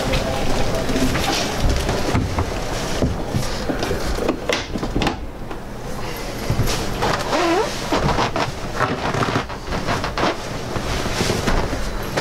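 Fold-up wall bed in a Flagstaff travel trailer being swung up into its cabinet over a sofa: scattered knocks and clunks of the bed frame and its lift mechanism, over the steady chatter of a crowded show hall.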